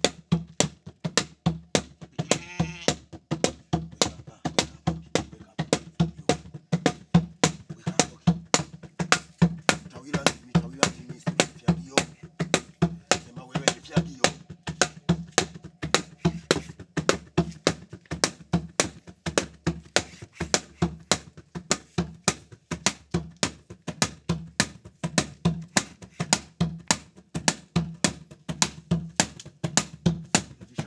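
Steady hand drumming, about two to three sharp strokes a second, with voices calling over it; a single wavering high cry about two and a half seconds in.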